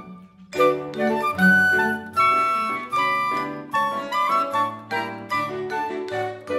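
A chamber quintet of flute, clarinet, piano, cello and vibraphone playing a Brazilian salon piece. After a short break right at the start, the ensemble comes back in about half a second later.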